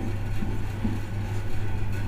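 Steady low hum in the room, one even droning tone with no change, with only faint small sounds above it.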